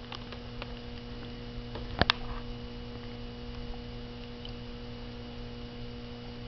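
Steady electrical hum at a few fixed pitches, with two sharp clicks close together about two seconds in.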